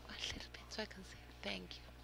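Faint, low speech in short snatches over a steady low electrical hum.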